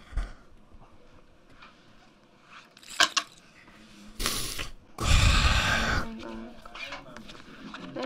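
A click, then a short sharp breath and a heavy exhale of about a second blown straight onto a close microphone, its rumble the loudest sound here.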